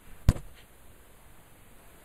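A single sharp click about a quarter of a second in, then faint room tone.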